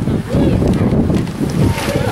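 Wind buffeting the microphone: a loud, uneven low rumble, with faint voices in the background.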